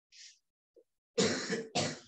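A person coughing twice in quick succession, each cough about half a second long, starting past the middle, after a short faint hiss.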